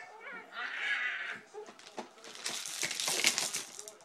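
A baby and an adult making playful noises: short squealing sounds near the start, then breathy, hissing noises and a louder burst of rustling and breath as the adult nuzzles the baby's face.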